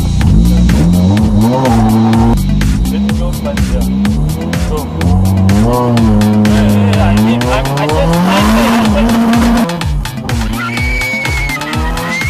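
Car engine revved hard while drifting, its pitch climbing and dropping again and again as the throttle is worked, with tyres squealing near the end as the car slides sideways.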